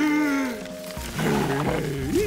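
Cartoon dragon's wordless voice: a cry that slides down in pitch, then a rough, growling grumble, over background music.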